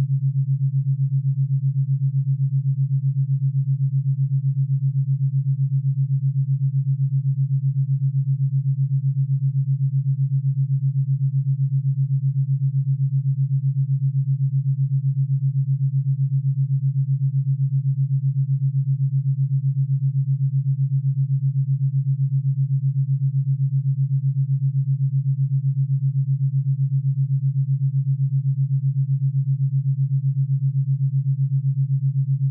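Theta binaural beat: a low, steady pure tone whose loudness pulses evenly at 7.83 beats a second, the Schumann resonance rate.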